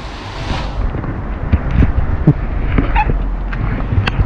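Wind rumbling on the microphone, with several short handling knocks and clicks as the camera is moved.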